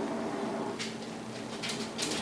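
Plastic candy wrapper being handled, with a few soft brief crinkles over a faint steady hum.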